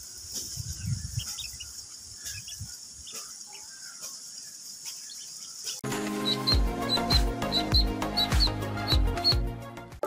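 Ducklings peeping faintly with soft rustling, then about six seconds in a music jingle with a steady deep beat cuts in abruptly and runs louder.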